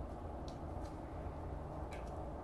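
Low, steady background rumble with a few faint, light ticks.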